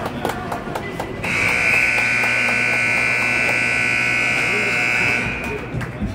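Ice hockey arena's scoreboard buzzer sounding one long steady blast of about four seconds, starting about a second in, the signal for the end of a period. Voices are heard around it.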